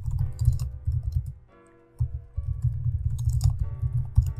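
Computer keyboard typing in quick runs of keystrokes, with a short pause about halfway through, over background music.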